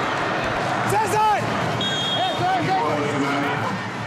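Football stadium crowd noise: a steady din with men's voices shouting over it about a second and two seconds in.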